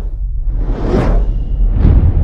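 Animated logo sting: two whooshes, about a second in and again near the end, over a deep, steady low rumble.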